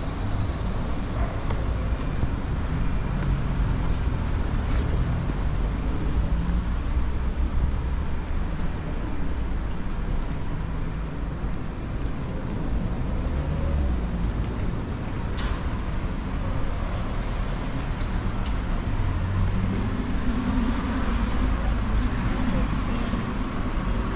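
City street traffic: a steady low rumble of passing cars and buses, with a single sharp click about fifteen seconds in.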